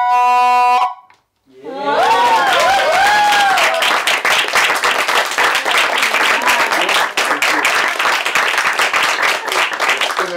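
A flute's last held note stops about a second in, and after a short pause a small audience claps and cheers, with a few whoops over the first couple of seconds of the clapping.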